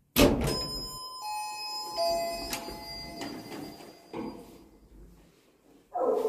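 A loud bang on a metal lift door, followed by ringing metallic tones that fade over a few seconds, with a few softer knocks after it.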